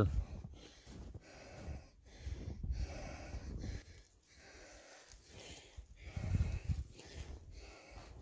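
A man breathing hard, in uneven gusts, while wading on foot through deep snow, with the low thuds of his steps.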